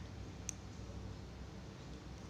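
A single sharp click about half a second in, from a small black plastic grafting clip being handled, over a low steady hum.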